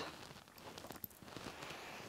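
Quiet room tone with a few faint scattered ticks.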